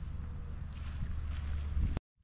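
Insects chirping outdoors in a fast, even, high-pitched pulse, over a low steady rumble.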